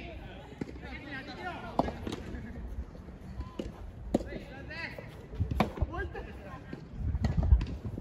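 Soft tennis rally: a rubber soft-tennis ball struck by rackets, giving several sharp pops a second or two apart, with players' voices calling between shots. A loud low rumble comes near the end.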